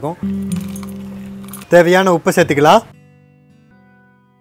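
Short music cue: a held chord rings out and slowly fades, a voice speaks over the middle of it, and a fainter chord dies away near the end.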